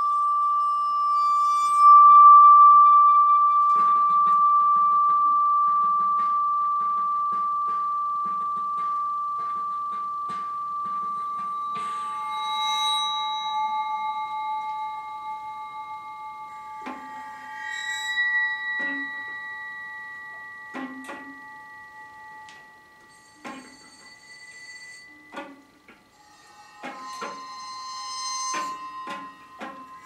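Free-improvised flute and percussion: long ringing metallic tones that swell about two seconds in and fade slowly, under a quick run of light taps, then sparser sharp strikes with brief ringing. Held flute notes join in over the second half.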